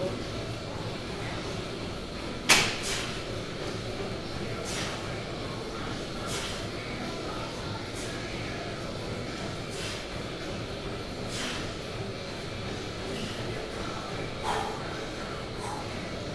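Short, sharp knocks of metal gym hardware, about one every one and a half to two seconds through a set of pull-ups on a cable-machine bar, over steady gym background noise. The loudest knock comes about two and a half seconds in.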